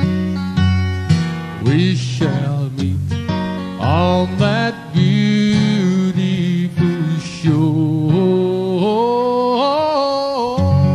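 Live acoustic guitar playing a country tune, with pitched notes that bend and slide.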